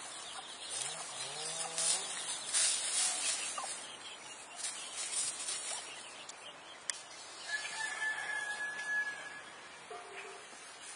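A rooster crowing once, about a second in.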